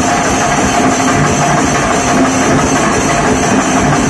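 Live fusion band playing loud, dense dance music driven by drums.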